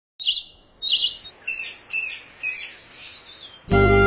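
A bird chirping in short high calls, about five of them, the first two loudest and the later ones fainter and lower. Near the end, music starts suddenly.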